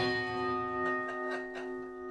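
A guitar chord struck once and left to ring, fading slowly.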